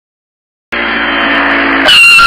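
Car sound effect: an engine running as a car drives up, then a loud tyre squeal near the end as it skids to a stop, cutting off suddenly.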